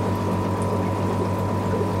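Aquarium pumps and filtration running: a steady low hum under the sound of moving water, with a thin steady tone above it.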